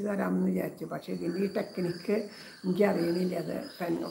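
A woman singing a devotional song, drawing out held notes between shorter phrases. A faint, thin, high steady whine comes in about a second in, under the voice.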